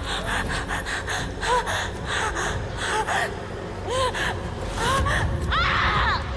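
A woman's pained gasps and short cries, again and again, over a dense run of sharp cracks.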